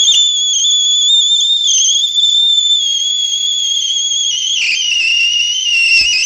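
Watkins-Johnson WJ-8711A HF receiver putting out a loud, high-pitched howl through its speaker, wavering slightly and dropping a little in pitch about four and a half seconds in. The howl comes regardless of the input and is a fault in the receiver's audio, which the owner suspects may lie in the sideband audio IF.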